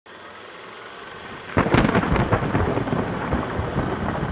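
Intro sound effect under a title card: a faint swelling rumble, then a sudden loud crash about one and a half seconds in that rumbles on with a few further hits.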